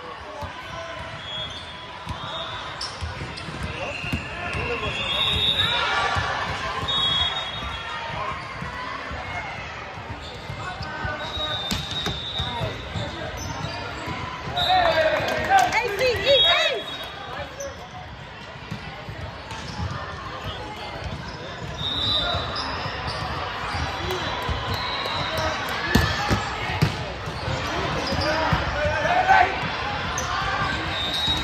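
Volleyball gym in a large echoing hall: players' voices and shouts, short high sneaker squeaks on the hardwood court, and balls bouncing and being struck. A loud burst of shouting comes about halfway through, and sharp ball hits come near the end.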